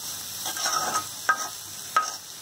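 Steel ladle stirring and scraping spinach in a black iron kadai, the leaves sizzling lightly in hot oil. Two sharp scrapes of metal on metal stand out, one just past halfway and one at the end.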